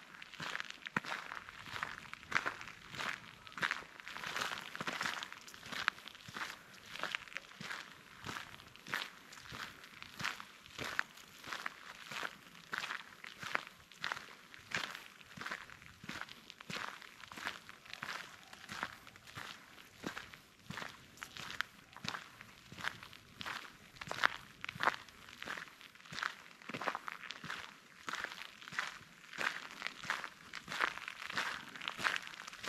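Footsteps crunching on a gravel road scattered with fallen leaves, at a steady walking pace of about two steps a second.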